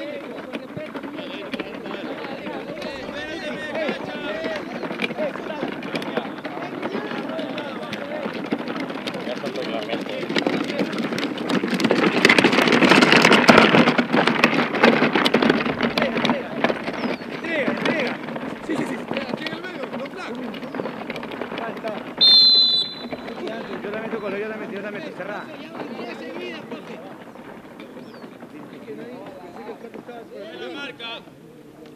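Players and people on the sideline shouting across a football pitch, many voices overlapping and swelling to loud shouting about halfway through. About three quarters of the way in comes one short blast of a referee's whistle.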